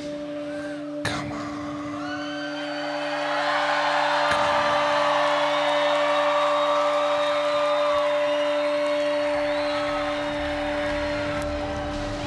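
A concert crowd cheering, screaming and whistling as a song ends, swelling a few seconds in. Underneath runs a steady droning tone from the stage sound system.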